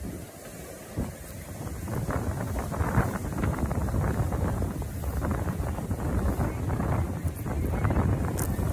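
Wind buffeting the microphone: a gusty low rumble that builds up about a second and a half in and keeps going, with a single short click about a second in.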